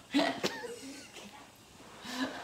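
A short, sudden burst of a man's stifled laughter close to the microphone, trailing off into fainter voice sounds.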